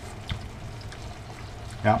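Tomato-and-beef gravy simmering in a frying pan on low heat, a steady soft bubbling.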